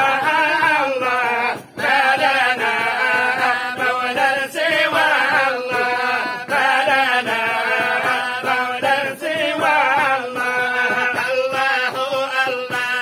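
A group of men chanting a devotional supplication together in unison, with long, ornamented notes and one short pause for breath about two seconds in.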